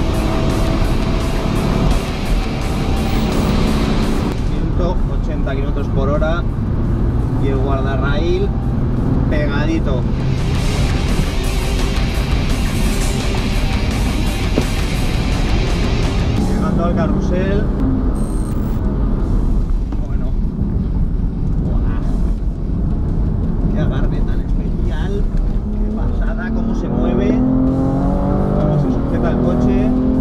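BMW M3 CS's twin-turbo straight-six heard from inside the cabin under hard acceleration. Its pitch climbs and drops back again and again as it pulls through the gears.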